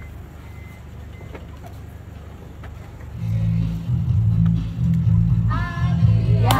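A low, steady background rumble, then music with a heavy pulsing bass line comes in about three seconds in. Singing voices join near the end.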